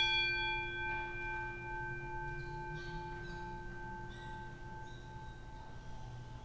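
An altar bell rung once at the elevation of the chalice, its single stroke ringing on as several clear tones that slowly fade away.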